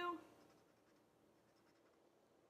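Faint sound of a felt-tip marker colouring in small squares on paper.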